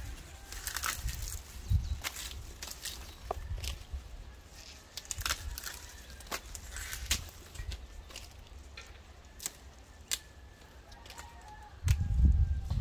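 Dry dracaena leaves being peeled down and pulled off the trunk by hand: irregular crackling and rustling with scattered sharp clicks and a few dull thumps.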